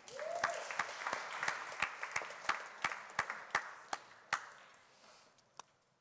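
Audience applauding: a burst of clapping that thins out and fades away over about five seconds.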